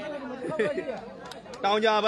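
Several people talking and chattering, with a louder voice coming in near the end.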